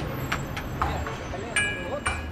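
City ambience of steady traffic rumble and indistinct voices, with a brief high ringing tone near the end.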